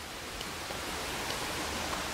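Heavy rain falling steadily, a continuous hiss that grows slowly louder.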